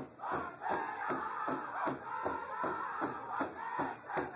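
A group of voices chanting together over a steady beat, about two to three beats a second.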